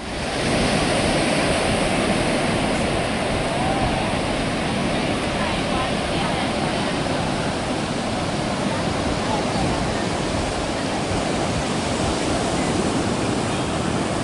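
Steady rush of ocean surf on a sandy beach, an even roar of breaking waves at constant level.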